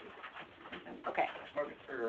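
Quiet speech picked up by a room microphone: a soft "okay" and low talk.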